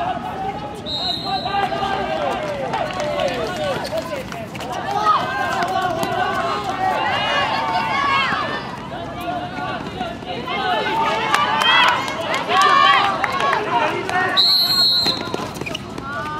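Many overlapping voices of spectators and players shouting and cheering, growing louder in bursts around the middle and again later. A referee's whistle sounds briefly about a second in and again near the end.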